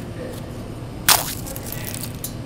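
A fortune cookie snapped and crushed open by hand, a single sharp crunch about a second in.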